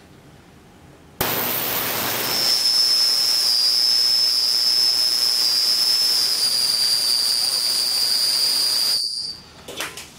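Homemade ultrasonic cleaner tank switched on about a second in. It makes a loud hiss with a piercing, steady high whine that wavers slightly, then cuts off suddenly near the end. It is painfully loud, which the builder puts down to too little fluid in the tank.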